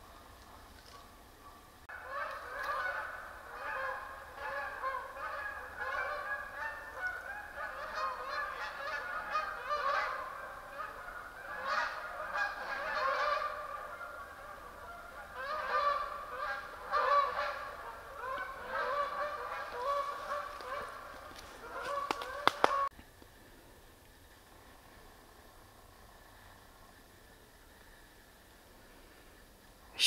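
A flock of geese honking, many overlapping calls one after another, for about twenty seconds. The honking cuts off suddenly a little before the end, leaving near silence.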